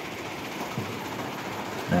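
Steady mechanical din of a rock-crushing plant in operation, with conveyors and crushers running and no single machine standing out.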